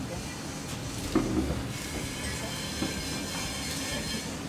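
Diner room noise: a steady low rumble with a brief murmur of voices about a second in.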